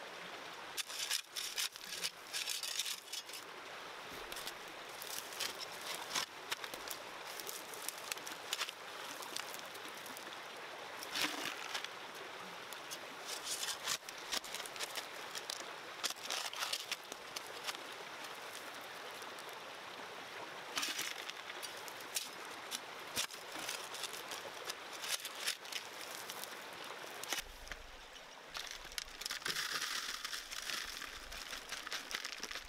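A small creek running steadily, with irregular clicks and scrapes of rocks and gravel being dug out of the bank with a hand tool.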